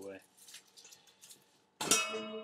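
A metal mixing bowl set down with a sudden clang near the end, ringing on in several steady tones. Before it there are only faint small handling sounds.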